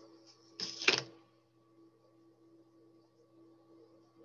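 A short scraping crackle just under a second in, from scissors being worked into glued cardstock to punch a hole, over a faint steady electrical hum.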